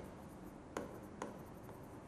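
Stylus pen writing on an interactive whiteboard screen: faint strokes and scratches, with two sharper taps about three-quarters of a second and just over a second in.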